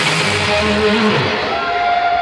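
Live industrial rock band ending a song: the drums stop and the guitar and bass hold a last chord that dies away after about a second, leaving a few notes ringing.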